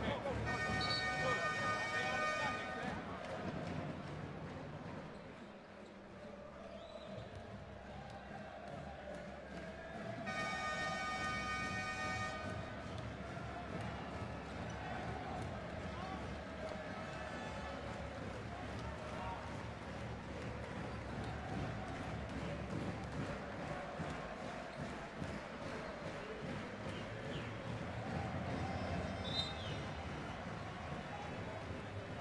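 Basketball arena crowd noise with a basketball bouncing on the hardwood court during live play. A steady horn-like tone sounds twice, about two seconds each time: once near the start and once about ten seconds in.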